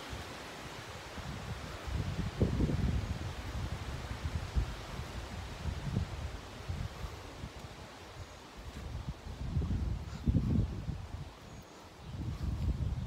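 Wind gusting on the microphone in irregular low buffets, strongest about two and a half seconds in and again near the end, over a steady rustle of leaves.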